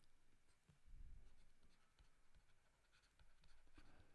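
Very faint stylus strokes and taps on a tablet screen as handwriting is added, with a few soft low thumps about a second in; otherwise near silence.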